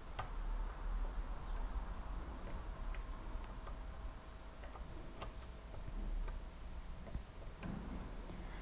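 Faint clicks of the buttons on a CountDown2 timer controller's navigation wheel being pressed, a handful of scattered clicks a second or more apart, over a steady low hum.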